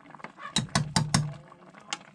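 Handling noise in a kitchen: a quick run of five or so sharp clicks and light knocks about half a second in, and one more click near the end.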